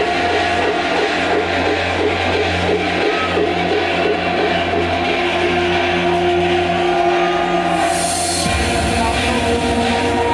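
Hardcore electronic music played loud over a festival sound system, through a stretch of sustained synth and bass tones without a clear kick. A short burst of hiss comes about eight seconds in, after which the bass line changes.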